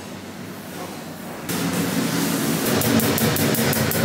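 Kitchen background noise: a quiet room hush that jumps about one and a half seconds in to a louder, steady rushing noise, with a quick run of about seven light ticks a second near the end.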